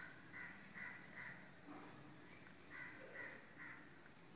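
Near silence with faint, distant bird calls: a series of short repeated calls, a pause, then a few more near the end.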